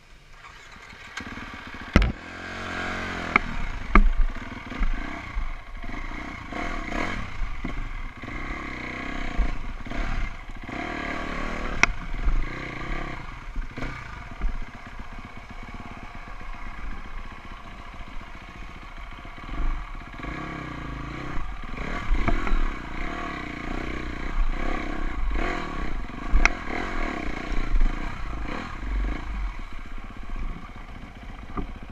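Off-road dirt bike engine revving up and easing off over and over as the bike is ridden slowly over a rocky trail. Several sharp knocks and some clatter come from the bike striking rocks.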